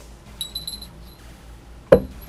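A few light metallic clinks of chain jewelry and bracelets as the hands move, about half a second in, then a single loud thump near the end.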